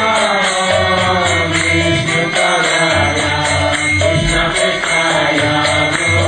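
Devotional kirtan: voices singing a chant with a bowed violin accompanying and a mridanga drum beating low strokes underneath.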